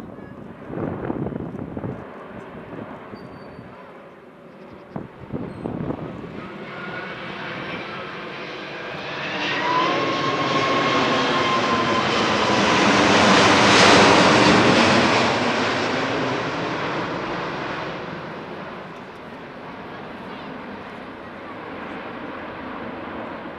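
Airbus A380 four-engine jet airliner flying low overhead. Its engine noise swells to a peak about two-thirds of the way in and then fades, with a high whine sliding slightly down in pitch as it passes.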